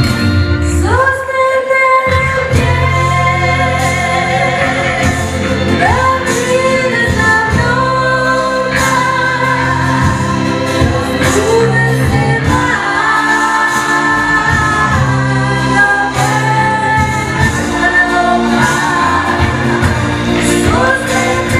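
A live blues song: a woman sings held, gliding notes over a steady band accompaniment, with more voices joining in.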